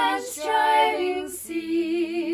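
One woman's voice layered in three-part harmony, singing a slow hymn line in held notes, with short breaks between phrases about half a second and a second and a half in.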